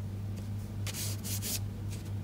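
Hands pressing down and rubbing over a paper card to stick a layer down, with a few short brushing sounds of skin on cardstock about a second in.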